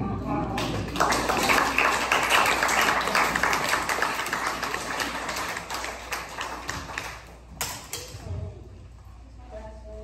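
Audience applauding, starting about a second in and dying away over several seconds.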